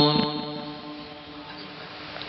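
The end of a man's long held note of chanted Arabic recitation, cut off right at the start and dying away within about half a second through a public-address loudspeaker, leaving a faint steady hiss of the sound system.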